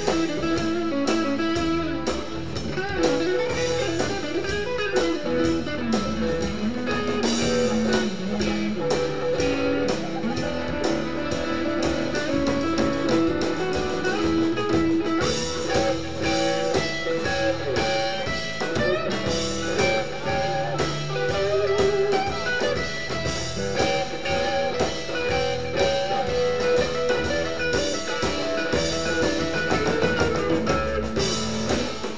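Live blues band playing an instrumental stretch with no singing: electric guitar lines over bass and a drum kit keeping a steady beat.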